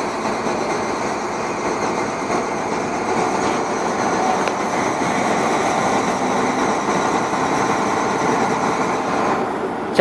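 Heavy mobile crane's diesel engine running steadily under load while it lifts an overturned crane.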